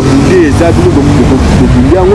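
A man talking in drawn-out, halting speech over a steady low background rumble.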